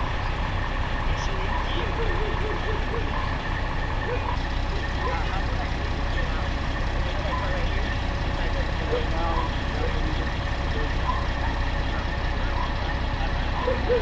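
Fire engines idling with a steady, low diesel rumble, and indistinct voices over it.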